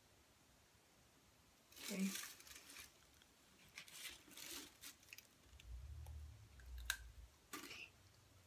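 Near silence: room tone with a few faint rustles and a single sharp click near the end, and one softly spoken "okay" about two seconds in.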